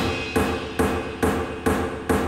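Experimental tribal electronic music: a drum machine playing evenly spaced hard knocks, a little over two a second, each with a short ringing tail. A high steady bleep sounds over the first beats and cuts off about a second in.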